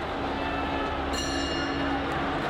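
Boxing ring bell struck about a second in, ringing the opening bell for the first round. It sounds over a low steady tone and background noise.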